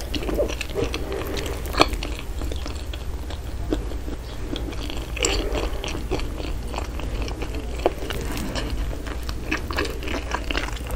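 Close-miked chewing of almond bread topped with flaked almonds: soft, moist chewing with scattered crunches and mouth clicks, the sharpest click about two seconds in.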